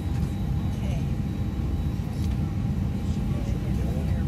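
Steady low rumble of an airliner cabin, with faint voices in the background.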